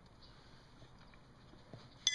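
Near silence: quiet room tone with a couple of faint, light taps.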